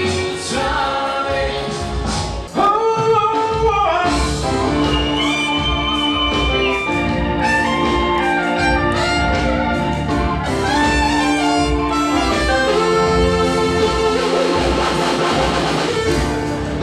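Live music played on electronic keyboards and synthesizers: held chords under a melody line. About two and a half seconds in, the music dips briefly, then comes back in louder.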